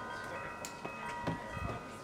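Metal chimes ringing, with several clear tones hanging on and new strikes at uneven moments, about four in the stretch.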